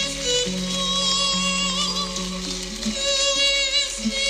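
A Sephardic folk song sung by a high male voice with vibrato, over held low accompanying notes that change about once a second.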